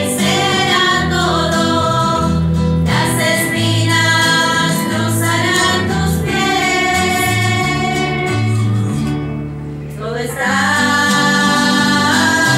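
A group of women singing a sacred song together, accompanied by an acoustic guitar. The voices break off briefly about ten seconds in, then come back in.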